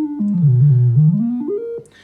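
Handheld glitch synthesizer sounding a single electronic tone whose pitch jumps in small steps as a knob is turned. The tone falls, then climbs back up past where it started, and cuts off just before the end.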